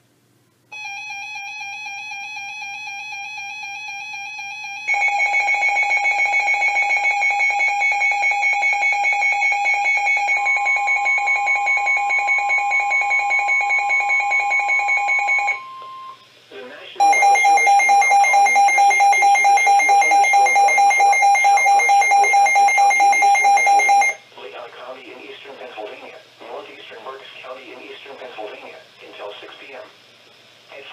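Several NOAA weather alert radios sounding their alarms for a severe thunderstorm warning. Electronic beeping starts about a second in and gets much louder about five seconds in. A steady weather-radio warning tone joins around ten seconds and stops around sixteen; a second stretch of loud, rapid beeping follows until about twenty-four seconds, after which a faint broadcast voice is heard.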